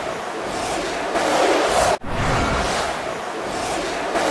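Intro sound effect under a logo animation: a noisy rushing swell, heard twice, each about two seconds long and cutting in sharply.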